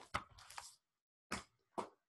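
Faint handling noise: four short soft clicks and taps, with a brief rustle about half a second in.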